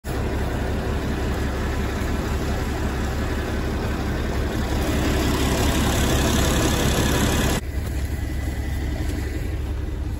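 Farm tractor engine running steadily at idle, with a broad hiss over it that drops out sharply about three-quarters of the way through.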